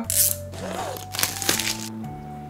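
Plastic shrink-wrap being torn and crinkled off a small cardboard box, in two short crackling bursts, one at the start and one about a second in, over background music.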